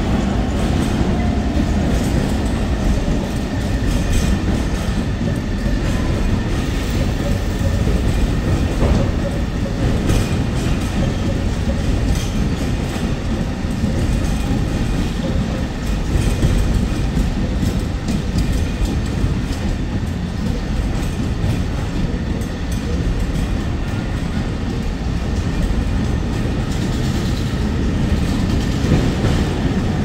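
Engineering train of ballast hopper wagons rolling past, a steady rumble with the clatter of wagon wheels over the rail joints.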